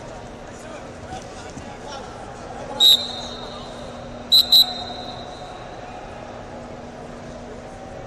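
Referee's whistle blowing over steady hall chatter: one short blast about three seconds in, then two quick blasts about a second and a half later, stopping the wrestling match.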